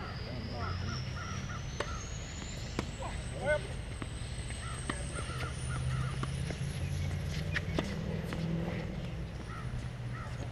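Tennis balls struck with rackets a few times during a rally, with birds calling repeatedly in the background. Laughter at the start, and a thin high whine that slowly rises in pitch.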